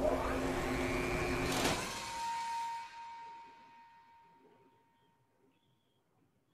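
Machinery noise from a safety film's soundtrack: a loud, steady mechanical hum that ends with a sharp hit about a second and a half in. A single steady high tone then lingers and fades almost to silence.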